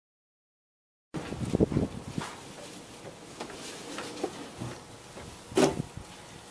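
Silence for about a second, then scattered knocks and clicks of handling over a faint steady hiss, with a louder knock just before the end.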